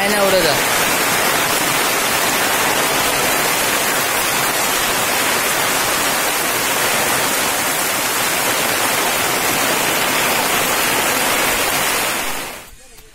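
Heavy rain pouring down, a dense, steady hiss.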